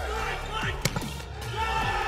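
A volleyball struck hard once during a rally: a single sharp crack a little under a second in, with the arena's background voices and music continuing under it.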